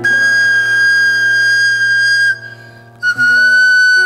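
Pan flute holding a long, breathy high note for about two seconds, then after a short break a second long note a little lower, over sustained grand piano chords that change with the second note.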